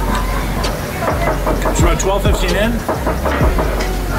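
Voices talking over a steady low background hum.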